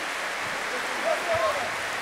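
Audience applauding steadily after a folk dance performance, with a voice briefly calling out about a second in.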